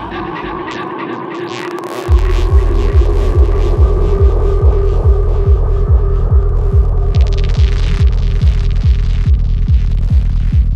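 Electronic dance track: a held synth tone over light ticking percussion, then about two seconds in a heavy kick drum and rolling bassline come in, repeating evenly at roughly two kicks a second, with brighter hi-hat noise building near the end.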